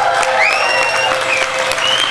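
Audience applauding at the end of a live song, many hands clapping steadily, with a high tone rising and then holding from about half a second in.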